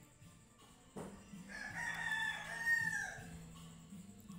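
A rooster crowing once, a single drawn-out call of nearly two seconds that falls away at the end.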